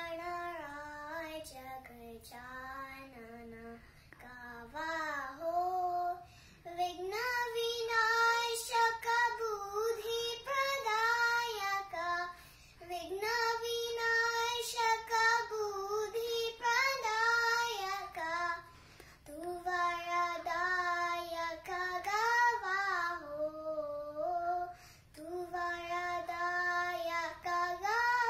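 A six-year-old girl singing a Hindustani chhota khayal in Raag Kedar, a solo voice in long held, gliding phrases with short pauses between them.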